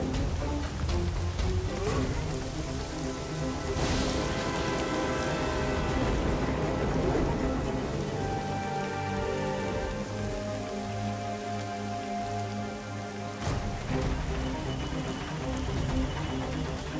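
Steady rain falling, as a cartoon sound effect, with background music playing over it; the music changes abruptly about three-quarters of the way through.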